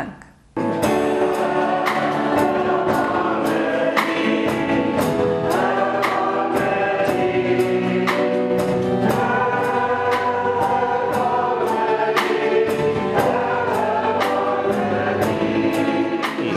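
Mixed choir of men and women singing a hymn, accompanied by a Pearl drum kit keeping a steady beat of about two strikes a second with cymbals. It begins about half a second in.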